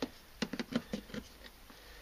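Plastic NP-F camera batteries being set by hand onto a desktop charger's slots: a quick run of light clicks and knocks in the first second or so, then faint handling.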